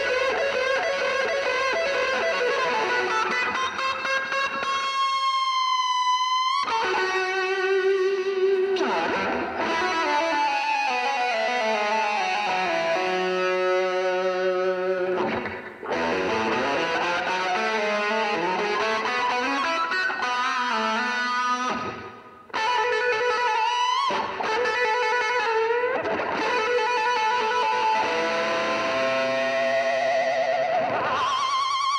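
Electric guitar played live through effects with distortion: sustained notes, a gliding rise in pitch about five seconds in, then falling runs of notes, with two brief breaks about sixteen and twenty-two seconds in.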